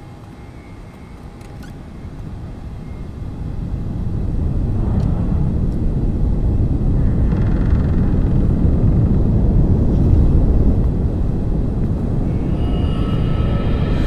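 A deep, low rumbling drone swells up over the first few seconds and then holds loud, with a couple of airy whooshes through it. Near the end, pitched tones of a horror score rise in.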